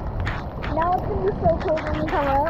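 Heavy rain pelting a swimming pool's surface, a dense patter of drops and small splashes close by. A girl's voice rises and falls over it without clear words.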